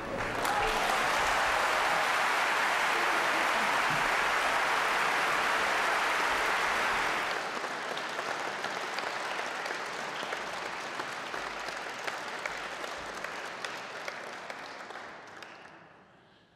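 Audience applauding: full, dense applause for about seven seconds, then thinning to scattered claps that die away near the end.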